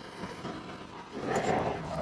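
Handheld butane torch flame hissing steadily, with a louder rush of noise a little over halfway through.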